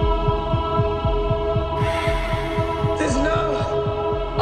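Tense documentary underscore: a sustained drone over a low, throbbing pulse at about four beats a second. A band of hiss joins about two seconds in, with a few wavering gliding tones near the end.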